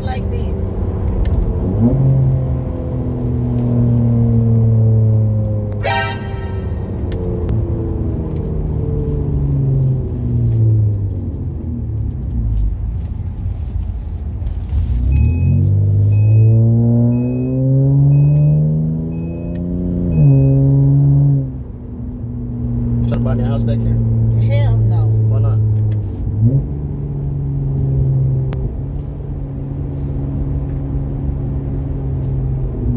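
2009 Acura TL's V6 with an aftermarket exhaust, heard from inside the cabin while driving. Its note climbs under acceleration and drops at each gear change, with one long climbing pull in the middle that ends in a sudden drop as the automatic gearbox shifts up. There is a brief high sound about six seconds in.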